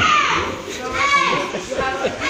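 Several children's high-pitched voices calling and shouting over one another.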